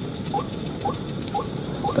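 Short rising chirps from a small animal, repeated about twice a second, over a steady high-pitched hiss.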